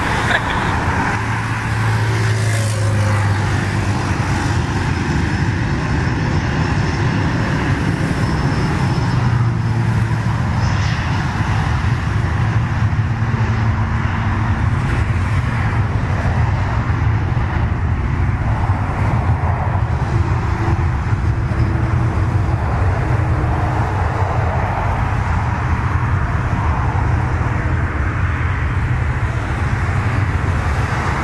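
Learjet 35's twin Garrett TFE731 turbofans at takeoff power on the takeoff roll: a loud, steady jet noise that holds without a break as the jet accelerates down the runway.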